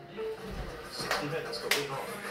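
Two sharp hand claps about half a second apart, heard over the speech and music of a television sports broadcast.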